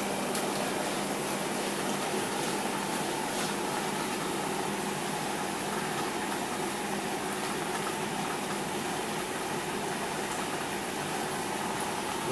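Steady bubbling and hum of an aquarium's air pump and sponge filter, air rising through the water.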